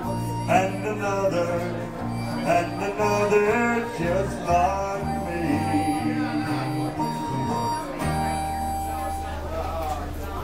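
Country tune played on two acoustic guitars with a harmonica carrying the melody, its notes sliding and at times held long over the guitars' strummed chords and bass runs.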